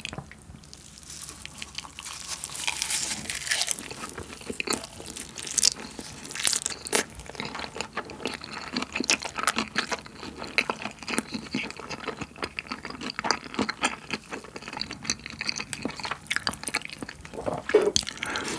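Close-miked chewing of a mouthful of spicy marinated raw shrimp with rice, fried egg and roasted seaweed, full of small irregular clicks and crackles.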